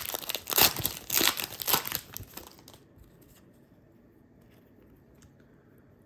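Foil wrapper of a hockey card pack being torn open and crinkled by hand, a dense crackling that stops a little over two seconds in.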